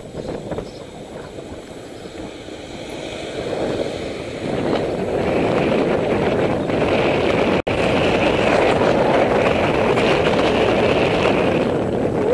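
Wind and road noise on a bicycle-mounted camera while riding along. It builds about four seconds in and then stays loud and steady, with a brief dropout about halfway through.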